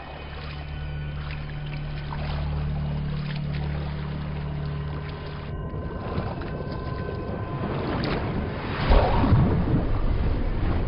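Suspenseful film score: a steady low drone for about five seconds, then a noisy rushing swell that grows loudest near the end, as an underwater sound.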